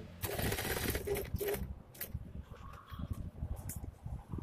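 A zipper pulled open, a rasp lasting about a second and a half, followed by scattered light clicks.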